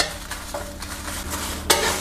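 A wooden spatula scrapes and tosses dried red chilies around a bare metal wok as they dry-roast over low heat. A sharp knock comes right at the start, then steady scraping, with a louder scrape near the end.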